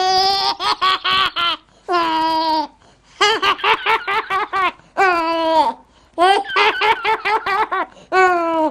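Baby laughing hard in repeated fits, some drawn out on one falling note and some in quick runs of ha-ha pulses, with short gasps between. It is a laugh that could pass for a grandfather's.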